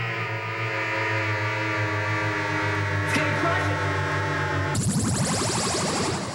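Electronic synthesizer drone from a low-budget sci-fi film soundtrack, a steady chord of held tones. Near the end it switches abruptly to a denser, rapidly pulsing, hissy electronic sound that begins to fade.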